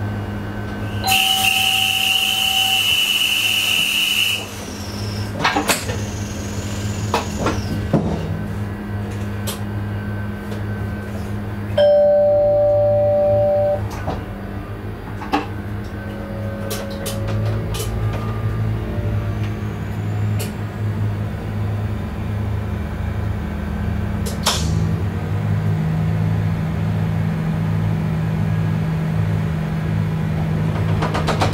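Train driver's cab at a standstill with a steady low hum from onboard equipment. About a second in, a shrill high whistle-like tone sounds for about three seconds. About twelve seconds in, a loud two-tone electronic signal lasts about two seconds, with scattered clicks in between; near the end the hum rises slightly as the train begins to move.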